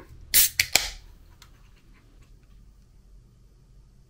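Ring-pull of an aluminium can of sparkling grape soda being opened: two sharp cracks about half a second apart with a short fizzing hiss of escaping gas, all within the first second.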